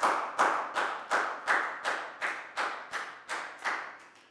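Hands clapping in a steady rhythm, about three claps a second, in praise of the students' work; the clapping stops shortly before the end.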